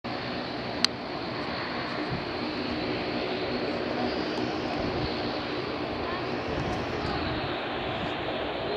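Distant twin-engine jet airliner on final approach, a steady engine rumble mixed with outdoor noise, with one sharp click a little under a second in.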